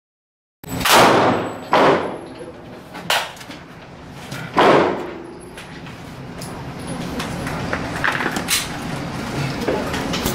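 Four sharp gunshots from handguns on an indoor shooting range within the first five seconds, each with a short echoing tail. After them comes a steady background noise with a few faint clicks.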